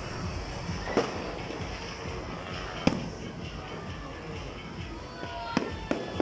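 New Year's fireworks and firecrackers going off: sharp bangs about a second in, a louder one near three seconds and two more close together near the end, over a steady background din.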